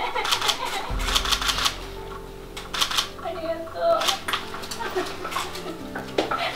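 Camera shutters clicking in quick runs, with short bits of voice between. Low steady tones come in about a second in and hold underneath.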